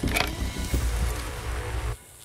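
Cicada killer wasp buzzing as it struggles against the forceps and nearly escapes, over a steady low rumble of handling and wind noise. Everything cuts off suddenly at the end.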